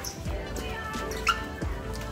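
Music playing, with held tones and low bass drum hits about a second and a half apart.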